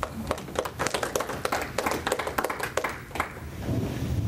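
Audience applauding, the clapping dying away after about three seconds.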